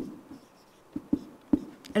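Marker pen writing on a whiteboard: faint scratching strokes broken by a few short sharp ticks as the tip meets and leaves the board.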